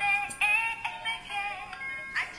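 A small light-up musical baby toy playing a thin, high-pitched electronic tune of short stepped notes.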